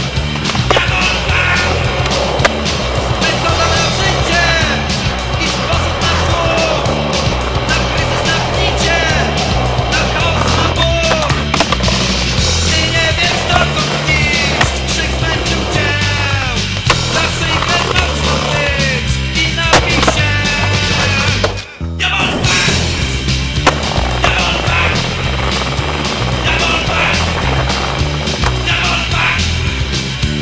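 Music track with a steady beat over street skateboarding: wheels rolling on pavement, with the clacks and landings of the board during tricks. The music drops out for a moment about three-quarters of the way through.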